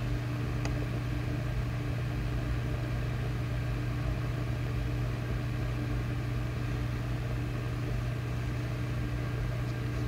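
Steady low mechanical hum with a faint higher tone above it, unchanging in pitch and level.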